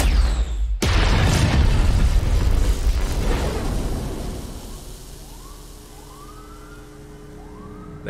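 Music cuts off just under a second in, followed by a loud rumbling blast that fades away over about three seconds. In the last few seconds, faint police sirens wail in rising and falling glides.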